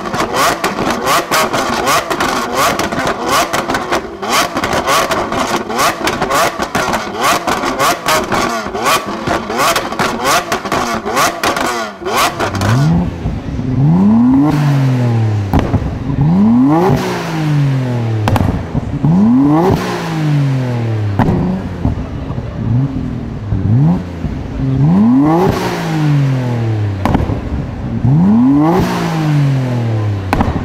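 Lamborghini Aventador's V12 revving with rapid popping and crackling from the exhaust for about the first twelve seconds. Then a Nissan Skyline R33 GT-R's twin-turbo inline-six is blipped from idle, each rev rising sharply and falling back, every two to three seconds.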